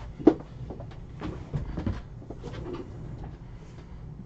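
A sharp knock about a third of a second in, followed by a scatter of lighter clicks and taps over the next two seconds.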